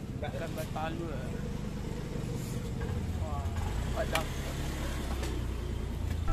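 Busy outdoor market ambience: a motor vehicle engine running with a low, steady rumble that grows stronger about halfway through, under faint scattered voices. There is a sharp metallic click about four seconds in.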